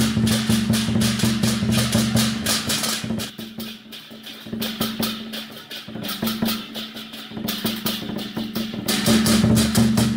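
Lion dance percussion: large lion-dance drums and clashing hand cymbals played in a fast, driving rhythm. About three seconds in the drum drops out and the beat thins to lighter, quieter strokes, then the full drumming and cymbals come back about nine seconds in.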